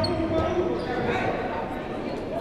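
Sounds of a basketball game in a large gym: players' voices across the court and a ball bouncing on the hardwood floor, echoing in the hall.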